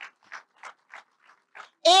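Faint, even hand claps from a few audience members, about three a second, before a woman's voice on the microphone resumes near the end.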